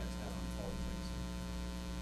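Steady electrical mains hum, a low buzz with a stack of even overtones, with a faint voice trailing off in the first half second.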